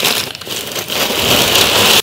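Crumpled packing paper rustling and crinkling as it is pulled out of a cardboard box, getting louder toward the end.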